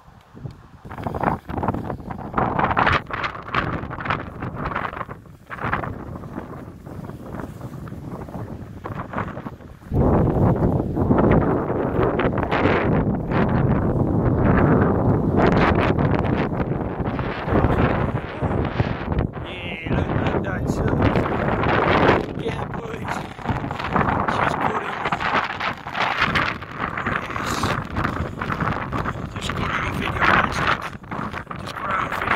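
Wind buffeting and handling noise on a phone microphone being carried at a run over a field, much louder from about a third of the way in.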